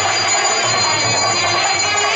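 A puja handbell ringing continuously over temple music of nadaswaram-type wind instruments and drums (sannai melam) accompanying an aarti.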